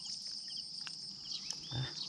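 Steady, high-pitched chorus of insects, with a few faint ticks over it.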